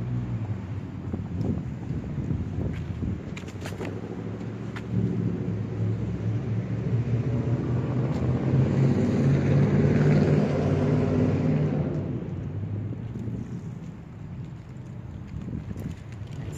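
A motor vehicle's engine running close by, growing louder to a peak about ten seconds in and then fading as it passes. A few brief clicks come about four seconds in.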